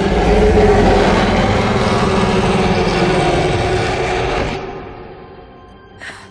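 A loud, dense rumble of film sound effects with steady music tones running through it, fading away about four and a half seconds in.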